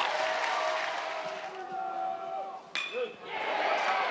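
Stadium crowd noise dying down, then a metal baseball bat pinging sharply against the ball near the end, with the crowd noise rising again as the fly ball carries to center field.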